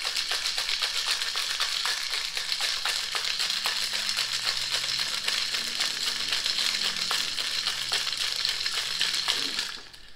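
Ice rattling hard inside a metal cocktail shaker as it is shaken rapidly and without pause to chill and mix a drink. The rattling stops abruptly near the end.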